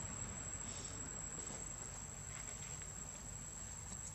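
Insects calling in a steady, high-pitched drone, with a few faint soft rustles.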